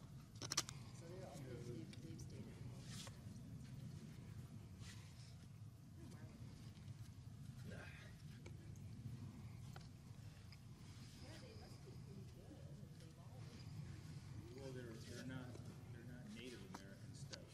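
Quiet outdoor background: a steady low rumble with faint, distant voices now and then, and one sharp click about half a second in.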